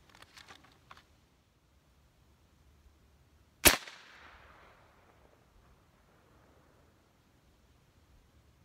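A single shot from an AirForce Texan .357 big bore air rifle, regulated to about 3100–3200 PSI: one sharp report about three and a half seconds in, with a tail that dies away over about a second and a half. A few faint clicks come in the first second.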